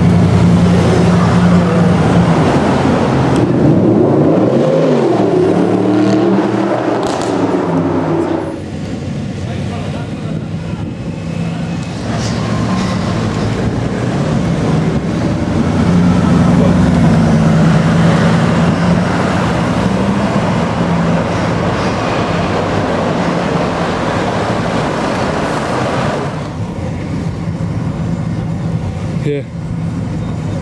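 Bugatti Veyron's quad-turbocharged W16 engine running at low speed in city traffic, its pitch rising and falling about four to eight seconds in, then settling into a steady low hum.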